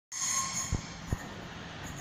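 Class 395 Javelin high-speed electric train pulling out of the station and running up the line. There is a brief high-pitched squealing ring in the first half-second, then a steady rumble with two dull low thumps.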